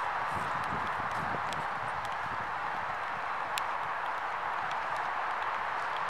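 Horse cantering on an arena sand surface, its hoofbeats dull thuds heard mostly in the first second or so, over a steady hiss.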